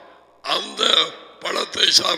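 Only speech: a man talking, after a brief pause at the start.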